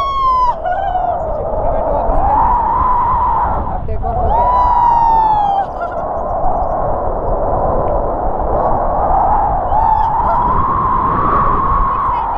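Wind rushing over an action camera's microphone in flight under a tandem paraglider, a steady rumble with a wavering whistle. About four seconds in, a person gives a high-pitched cry that lasts a second and a half and falls slightly in pitch.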